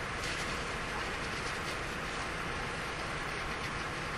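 Steady classroom room noise, an even hiss with no speech.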